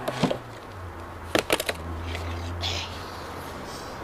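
Sharp wooden knocks as the timber wedges under a brick arch's wooden centring are knocked loose to strike the arch: a couple of knocks at the start, then a quick run of three or four about a second and a half in.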